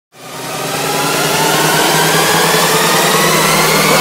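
Synthesized intro sound effect: a loud, dense wash of noise over a steady low hum, fading in over the first second and then holding level.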